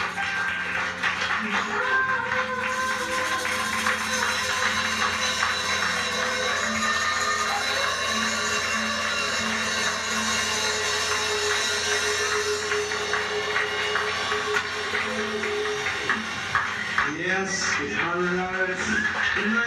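A live ska band playing, a woman singing lead over a busy hand-percussion groove.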